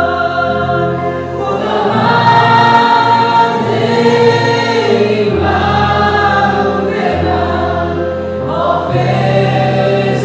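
A group of voices singing a Persian worship song together, over instrumental backing with long held bass notes that shift every second or two.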